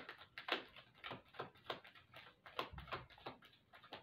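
Small deck of cards shuffled hand to hand: a run of soft, irregular card slaps, about three or four a second.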